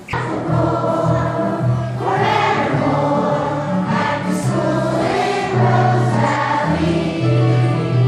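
A group of children singing a song together over a low accompaniment; the singing starts suddenly at the opening and carries on as sustained, held notes.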